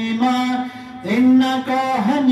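A man chanting a melodic religious recitation in long, drawn-out held notes. He takes a short breath a little past the middle, then rises into the next held note.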